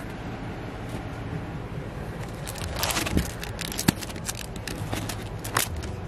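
Vinyl LP jackets, some in crinkly plastic sleeves, being flipped through by hand in a record bin. A run of quick light clicks and rustles starts about halfway through.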